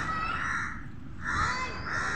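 Crows cawing: two harsh calls, one just after the start and another about a second and a half in, over steady low street noise.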